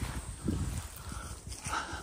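Soft, irregular low thuds and light rustling from people moving on foot through low undergrowth.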